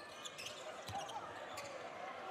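Faint game sound from an indoor basketball arena: a few light knocks of the ball on the court over a low crowd murmur.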